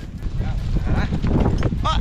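Horses walking on a dry dirt track, their hoof steps knocking under a steady low rumble. A man exclaims "Oh!" near the end.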